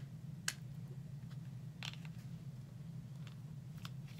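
A small plastic squeeze tube of moisturizer being opened and handled: a sharp click about half a second in, another near two seconds, and a few fainter ticks, over a low steady hum.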